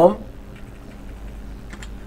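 Keystrokes on a computer keyboard as a search term is typed, faint, with a few clicks near the end.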